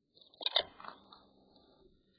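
A dog mouthing a plush toy, heard through a pet camera's microphone: a short crunchy, chewing burst about half a second in, trailing off into faint rustling.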